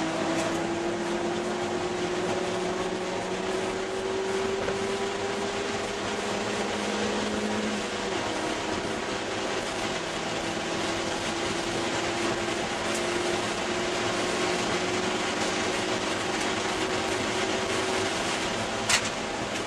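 Inside the cabin of a 2001 Ford Escort ZX2 on track: its 2.0-litre four-cylinder engine is running hard under load, together with wind and road noise. The engine's pitch climbs slowly, drops back once about eight seconds in, then climbs again.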